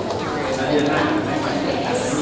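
Crowd of people chatting at once, with footsteps and heels clicking on a hard stone floor.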